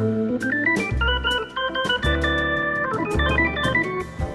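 Instrumental jazz: a lead line climbs in quick notes and then holds longer notes over low bass notes and regular cymbal strokes.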